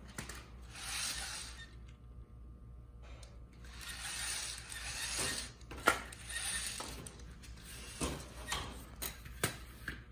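A metal-framed VEX competition robot being handled by hand, tilted up and set back down on foam field tiles. Its frame and wheels make scraping and rattling sounds, with a series of sharp clicks and knocks, the loudest about six seconds in.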